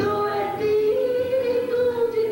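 A woman singing a gospel song into a microphone, holding one long note that steps up in pitch about half a second in, over instrumental backing.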